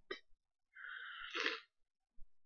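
A woman's short, quiet breath sound between sentences: a faint mouth click, then a brief intake of breath that ends in a sharp catch about one and a half seconds in.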